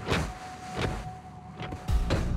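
Cartoon robot sound effects: a few short mechanical whirs and knocks as giant robots move, over a faint steady hum, with the loudest knock at the very end.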